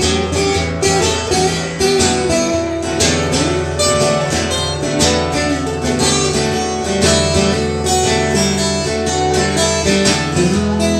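Two guitars playing an instrumental break in a blues song: one strums a steady rhythm while the other picks a lead over it.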